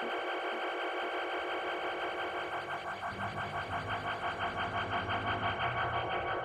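Electronic music from a live-played synthesizer loop: a fast, evenly pulsing texture of several held pitches, with low bass coming in about halfway.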